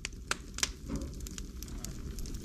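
Faint crackling with scattered sharp clicks over a low hum, fading in and growing slowly louder.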